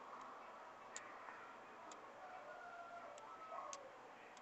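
Near silence with a few faint, irregular clicks of plastic pearl beads and a needle knocking together as the beads are handled and threaded.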